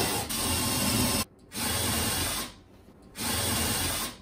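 Table saw cutting wood: a loud, steady noise over a low motor hum, in three stretches, each broken off by a short silence.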